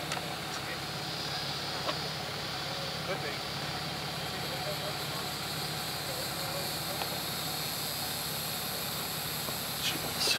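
A vehicle engine idling steadily, a low even hum, with a few light clicks and faint voices in the background.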